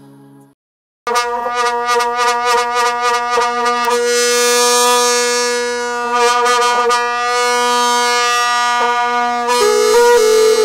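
Music on a wind instrument holding one steady note over a lower held drone, starting suddenly about a second in after a brief silence. Quick percussive strokes run under it for the first few seconds, and the melody moves to a new note near the end.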